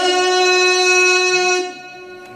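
A male reciter's voice chanting the Quran in the melodic style, holding one long, steady final note that stops about a second and a half in, leaving a fading echo in the hall.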